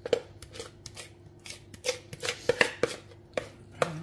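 Kitchen handling noise as thick cheesecake batter is squeezed from a plastic bag and spread into a metal baking pan: a dozen or so irregular soft clicks and wet taps, loudest a little past the middle.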